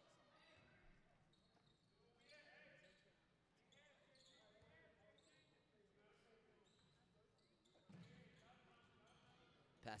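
Faint basketball game sounds: a ball bouncing on a hardwood court and distant players' voices.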